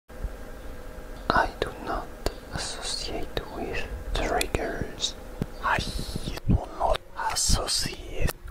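Whispered speech, with a few sharp clicks among the words.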